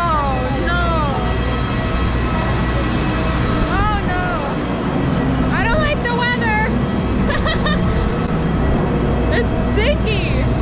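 Steady loud hum and rush of aircraft noise on an airport apron, heard at the plane's door and stairs, with a woman's short high-pitched exclamations rising and falling over it several times.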